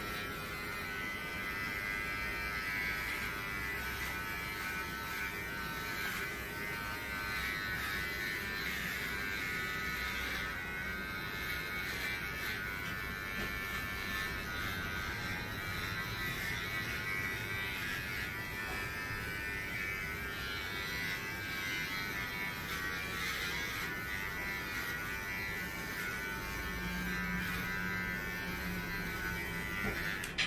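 Electric pet hair clippers buzzing steadily as they shave the fur off a dog's belly in preparation for spay surgery. The buzz cuts off at the very end.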